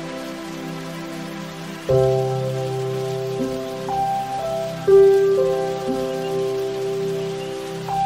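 Slow recorded music, likely a song's closing bars: sustained held chords, with louder held notes coming in about two seconds in and again about five seconds in, over a steady faint hiss.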